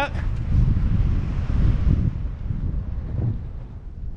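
Wind buffeting the microphone of a camera carried under a tandem BASE parachute gliding in to land: a steady low rumble with a fainter hiss above, easing a little near the end as the canopy slows.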